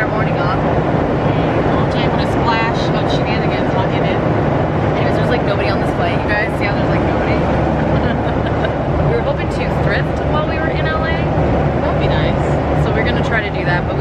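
Airliner cabin noise: a steady, loud drone of engines and air with a low hum, under indistinct chatter of voices.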